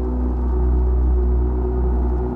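Dungeon synth music: a deep, sustained synthesizer drone with a heavy low bass and layered held tones, swelling slightly in the middle.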